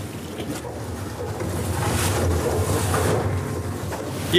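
Motorboat engine running with a steady low hum, under rushing wind and water noise that grows louder toward the middle.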